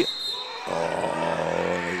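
A man's drawn-out "Oh", held at one pitch for over a second, over gym background noise. A thin high whistle tone fades out in the first moment.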